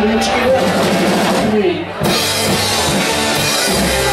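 Live rock band playing: electric guitars, bass and drum kit. The music dips briefly just before two seconds in, then the full band comes back in with cymbals washing over the top.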